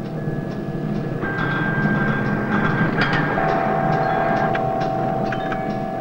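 Electronic soundtrack music: held synthesizer tones at several pitches switching on and off over a low steady drone, with a long steady tone coming in about halfway through.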